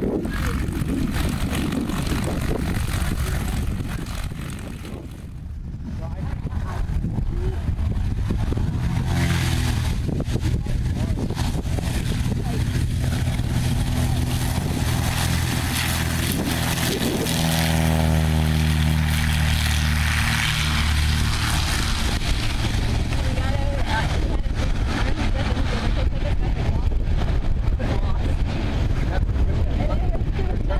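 Maule light plane's single propeller engine, faint under wind buffeting the microphone at first, then growing louder from about nine seconds in as the plane taxis and runs at takeoff power, loudest in the second half.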